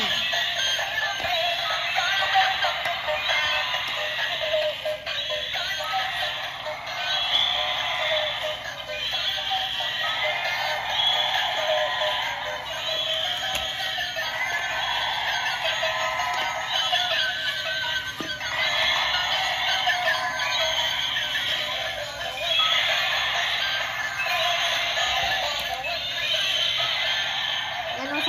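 Tinny electronic music from the sound chip of battery-operated walking toy dinosaurs, a thin synthetic tune repeating in short phrases with no bass.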